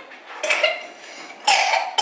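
Two short coughs from a person, about half a second in and again about a second and a half in.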